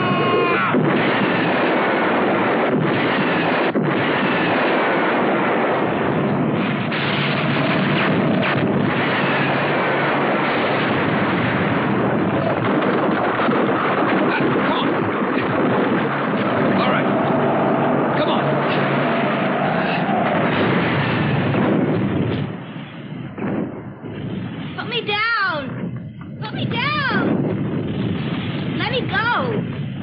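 Film soundtrack of a monster attack: a dense, continuous din of explosions and crashing debris that eases off after about 22 seconds, followed by a few shrill, rising-and-falling cries.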